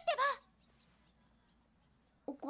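A brief high-pitched voice at the very start, its pitch bending down and up, then near silence.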